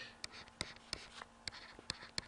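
Stylus writing on a tablet screen: a quick string of light ticks and short scratches as the pen taps and strokes out a handwritten formula.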